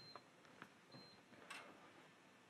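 Near silence, with two faint short high-pitched beeps about a second apart from the HT PV-ISOTEST insulation tester while it runs a 1500 V insulation measurement, and a few faint clicks.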